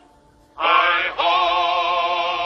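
A man singing one long held note with a wavering vibrato, starting about half a second in after a short pause, with a brief break just after a second.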